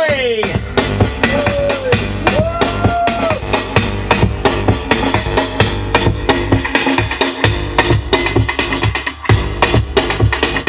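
Drum and bass being mixed live on DJ decks: fast, dense breakbeat drums over deep bass. A sharp falling pitch sweep comes right at the start, then a couple of gliding tones in the first few seconds.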